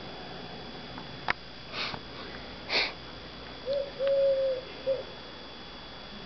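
Two short sniffs and a click, then a dove cooing three notes, the middle one long and steady.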